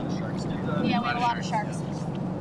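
People's voices calling out over a steady rumble and wash of wind, water and boat noise around inflatable boats at sea.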